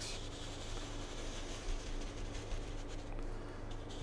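A wide 2½-inch paint brush scrubbing and swirling over a canvas, blending wet oil paint: a steady soft scratchy rubbing.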